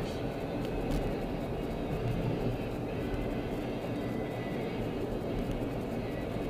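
Steady road and engine noise heard inside a moving car's cabin, a low rumble, with a single click about a second in.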